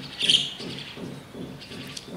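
A single short, high-pitched chirp, like a small bird calling, about a quarter of a second in, followed by faint background sound.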